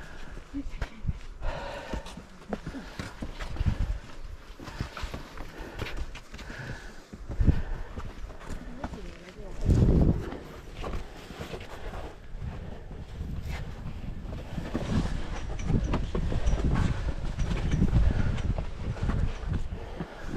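A hiker scrambling on sandstone: irregular footfalls, scuffs and knocks, with rubbing and bumping on the body-worn GoPro. The loudest bump comes about halfway through. Other hikers' voices are faintly heard.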